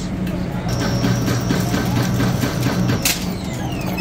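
FamilyMart self-serve coffee machine running as it makes an iced café latte: a steady hum, a thin high tone from under a second in, and a high whine falling in pitch over the last second as milk begins pouring over the ice.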